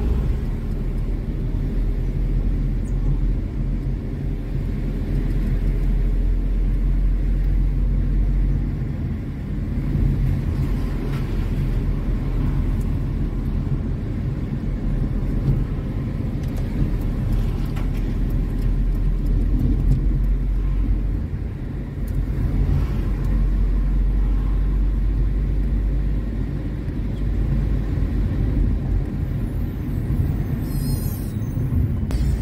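Steady low engine and road rumble heard from inside a moving car's cabin, easing briefly about nine seconds in and again near twenty-two seconds.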